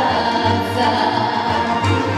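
A woman singing into a microphone over musical accompaniment with a pulsing bass line.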